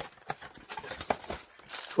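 Cardboard trading-card blaster box being handled and opened: scattered soft clicks, taps and faint rustles of the box and its contents.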